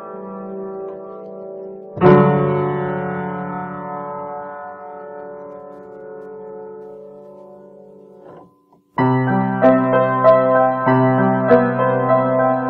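Solo piano played slowly. A held chord fades, a loud chord about two seconds in is left to ring and die away, and after a short silence a new passage of moving notes begins about three seconds before the end.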